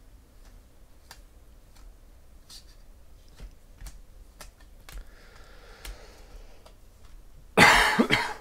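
Soft, scattered clicks of stiff trading cards being slid one by one off a stack in the hands, then a loud cough near the end.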